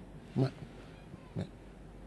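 A pause in a studio conversation, with only two brief voice sounds from the men: a short murmur about half a second in and a shorter, fainter one around a second and a half.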